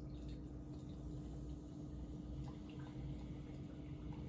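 Modelo Especial lager poured from its can into a glass: a faint, steady trickle of liquid with the beer fizzing as it fills.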